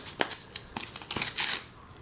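Foam packing sheet rustling and crinkling as hands pull it off a silicone phone case, with a few small sharp clicks.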